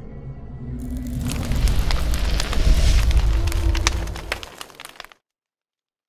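Production-logo sound sting: a low booming rumble with crackling, fire-like effects over music. It swells about a second in and cuts off suddenly about five seconds in.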